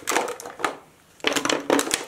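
Small foundation bottles being set down one after another on a hard tabletop: a run of quick clicks and knocks that pauses for a moment about a second in, then carries on.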